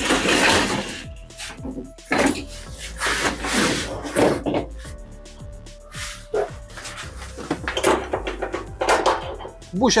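Background music over irregular knocks and scraping as a heavy wheeled portable power station is shifted across a van's load floor.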